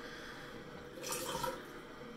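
Water running faintly from a bathroom tap into the sink, with a brief louder patch about a second in.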